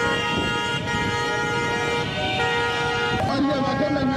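Several vehicle horns sounding together in long held blasts, the mix of pitches shifting as horns drop in and out, over the noise of engines and voices in a busy street.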